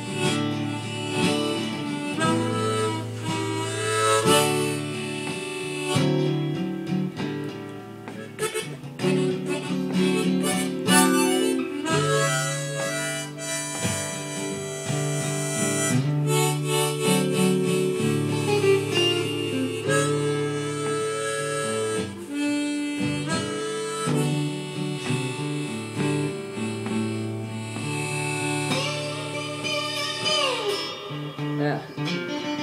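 Blues harmonica solo of long held notes over strummed and plucked guitar accompaniment, with a falling bend on a note near the end.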